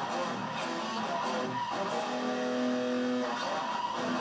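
Stratocaster-style electric guitar played with a pick: a line of single notes, one of them held from about two seconds in until past three seconds.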